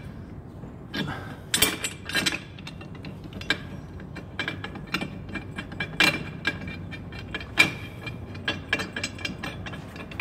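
Irregular metallic clicks and clinks as a metal bracket is worked into place between a DQ500 gearbox's transfer case and a 4G63 engine block and its bolts are started by hand. The sharpest knocks come at about one and a half to two seconds, six seconds and seven and a half seconds in.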